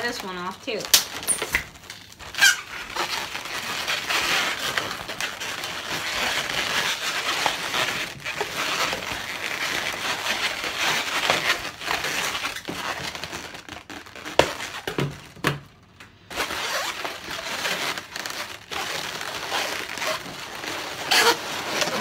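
Latex twisting balloons rubbing and squeaking against each other as a balloon sculpture is handled and its parts pushed into place. It is a continuous rustle with a few short pitched squeaks near the start and scattered sharp clicks.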